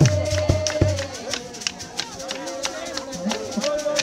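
Zion church dance music: rattles shaken in a steady beat, with drumming that stops about a second in and a long held tone above it.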